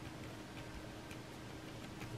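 Faint light ticks, several a second and unevenly spaced, over a steady low hum.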